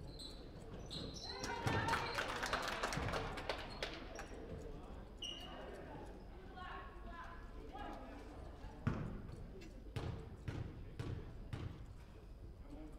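Basketball bouncing on a hardwood gym floor, a handful of separate bounces in the second half as a player dribbles at the free-throw line, with shoe squeaks and voices echoing in the gymnasium. A busier burst of voices and squeaks comes about two seconds in.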